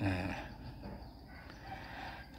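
A chicken calling faintly, loudest at the start and tailing off within about a second.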